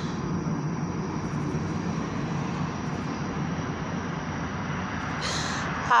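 Steady rumble of road traffic passing close by, with a short breath near the end.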